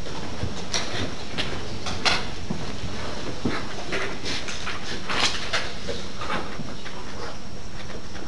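Classroom room noise: a steady hiss with scattered small clicks and rustles, a little louder about two seconds in and again about five seconds in.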